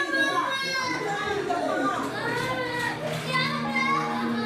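A five-year-old girl screaming and crying in high, strained cries as she is held down by nurses for anaesthesia before surgery: the screams of a terrified child. Soft music comes in near the end.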